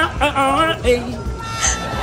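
A man singing a melody in short phrases with held, wavering notes.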